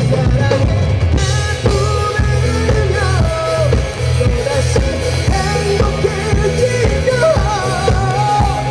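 Live rock band playing: a singer's voice carries a melody over electric guitar and a drum kit, loud and continuous.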